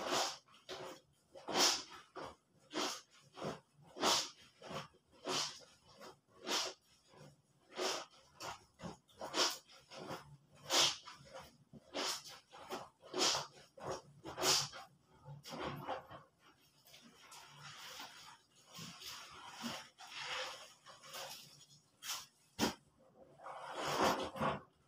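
Wet, soapy clothes being scrubbed by hand in a plastic basin: rhythmic squelching rubs of fabric against fabric, about one and a half strokes a second, turning to a softer, steadier swishing about two-thirds of the way through.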